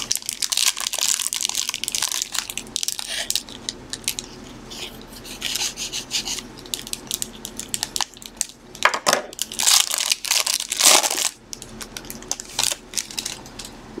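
Shiny wrapper of a Chronicles soccer card pack crinkling and tearing as it is peeled open by hand, in irregular rustling bursts that are loudest about nine to eleven seconds in.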